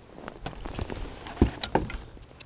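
A hooked largemouth bass being swung out of the water and aboard a bass boat: irregular clicks and knocks of the fish and tackle against the boat, with a sharp thump about one and a half seconds in and two smaller ones just after.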